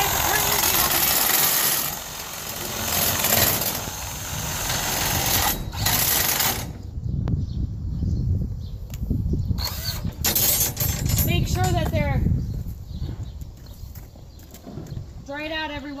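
A drill turning the winch shaft of a barn's roll-down side curtain to lower it. It runs steadily and loudly, then cuts off suddenly between six and seven seconds in.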